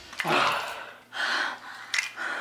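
A woman gasps for breath twice as a long, hard kiss breaks off, with a short click near the end.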